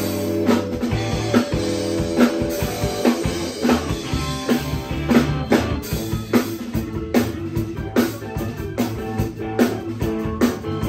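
Live rock band playing an instrumental passage: electric guitar and bass guitar over a drum kit keeping steady time, with keyboard.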